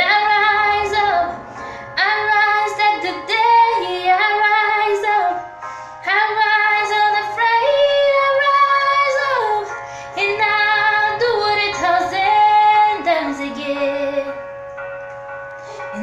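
A woman singing long, held notes that slide up and down between pitches, in phrases a few seconds long with short breaths between them, over a faint steady background tone.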